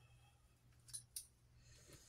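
Near silence with a faint low hum, broken about a second in by two quick, short snaps as long hair is gathered and tied back by hand.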